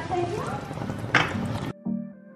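Red candy-apple sugar syrup bubbling at a boil in an aluminium pot, with a brief murmur of voice. Near the end it cuts off abruptly and soft background music with a steady beat takes over.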